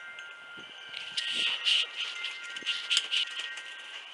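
Metal wind chime tinkling in the breeze: a run of light, high strikes from about a second in until near the end, over tones that ring on.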